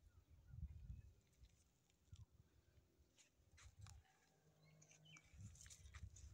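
Near silence: faint outdoor ambience with a few soft low rumbles and some faint, short high chirps or clicks.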